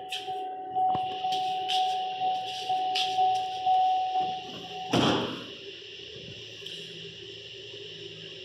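The door of a lifted pickup truck is shut with one loud slam about five seconds in, after a few knocks as he climbs down. A steady electronic tone from the cab, typical of a door-open warning, cuts off at the moment the door shuts.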